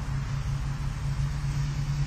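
A steady low hum with a rumble beneath it, unchanging through a pause in speech.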